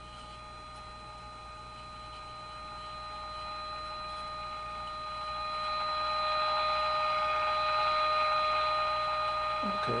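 An AM radio's speaker playing a signal generator's steady modulation tone, with overtones and a hiss behind it. The tone grows louder over the first six seconds or so as the bottom coil of the first 455 kc IF transformer is tuned toward its peak, then holds and dips slightly near the end.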